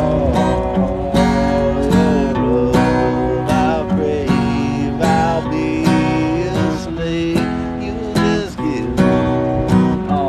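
Acoustic guitar strummed in a steady rhythm, a strum a little under a second apart, with a man singing over it.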